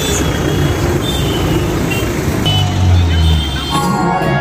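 Road traffic noise at a busy street junction: a steady engine and tyre rumble with a few short, high horn or beep tones. Just before the end, music begins.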